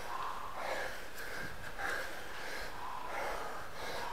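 A stair runner's heavy, rapid panting, about two breaths a second: hard breathing from the exertion of racing up many flights of stairs.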